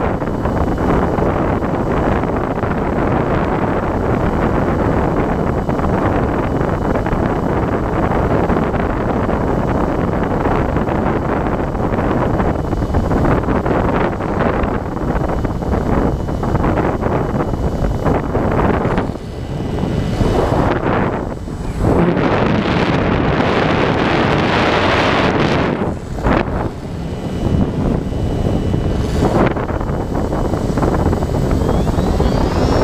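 Airflow rushing over the microphone of the camera aboard a Talon FPV plane in flight, a steady loud wind rush with a faint high steady tone beneath it. The rush dips briefly a few times in the second half.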